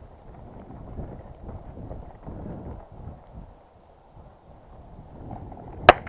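Footsteps and rustling of tall dry grass as a person walks through it, growing quieter for a moment in the middle, then one sharp click just before the end.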